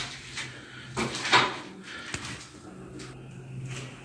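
A few light knocks and scrapes, the loudest about a second in, over a steady low hum.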